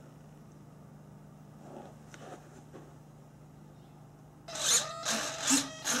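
A low steady hum at low level. About four and a half seconds in, a run of loud scraping and rustling handling noises starts and runs to the end.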